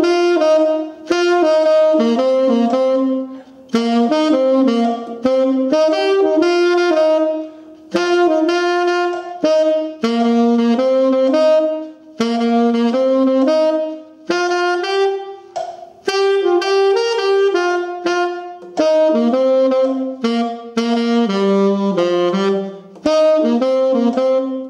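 Selmer Mark VI tenor saxophone playing a solo jazz-blues line of short phrases, separate notes broken by brief rests every couple of seconds. The line works through pentatonic groups over a twelve-bar blues, approaching target notes from above and below.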